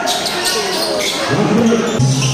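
Live basketball game sound: spectators' voices with a few sharp knocks from play on the court. A low steady musical tone comes in near the end.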